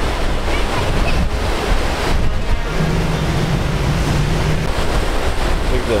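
Surf washing and breaking on the beach, with steady wind rumble on the microphone.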